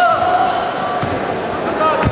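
Sharp thuds of a karate kumite exchange, the loudest right at the end as the fighters clash, under shouting voices with one long held shout at the start.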